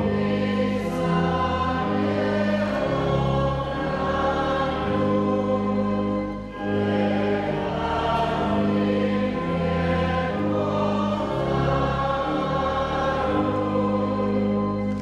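Church congregation singing a hymn, with organ chords held underneath and changing step by step. There is a short break between lines about six and a half seconds in.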